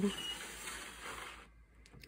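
Glass sliding door of a reptile terrarium scraping along its track for about a second and a half, fading out, followed by a couple of faint clicks.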